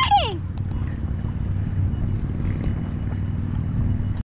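Wind buffeting the microphone on open water: a steady low rumble with no distinct events.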